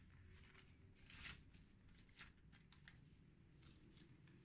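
Near silence with a few faint, brief rustles of waxed paper being handled around a raw burger patty.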